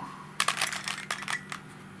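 Plastic Helicopter Cube puzzle clicking as an edge is turned to move a center piece into place: a quick run of small clicks, then a few lighter ones.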